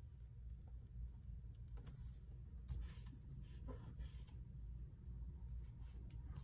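Faint rustling of paper and a few light taps of fingertips and nails as a sticker is pressed and smoothed onto a planner page.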